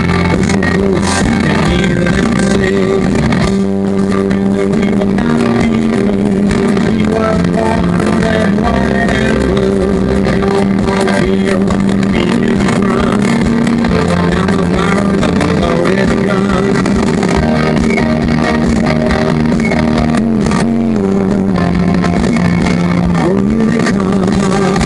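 Live rock band playing loudly, with electric guitar, drums and keyboards, sustained guitar chords changing every few seconds.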